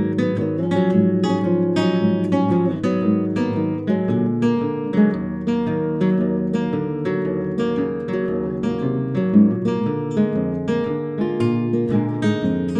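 Two nylon-string classical guitars playing an instrumental passage together, a continuous run of plucked notes and chords.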